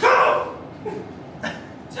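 A man's single loud, short shout at the start, followed by quieter room sound with a brief click about one and a half seconds in.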